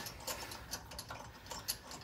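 Faint, irregular light clicking of a hand ratchet on a car wheel's lug nuts as they are run down.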